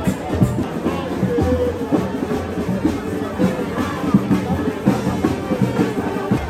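Street carnival band playing: drums keeping a steady beat under brass, with crowd voices mixed in.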